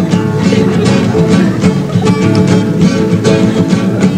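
Instrumental break of a Brazilian moda caipira: two acoustic guitars plucked and strummed in a steady, lively rhythm, with no singing.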